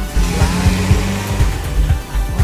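Background music: a pop-rock song with a steady drum beat and sustained bass, in a gap between sung lines.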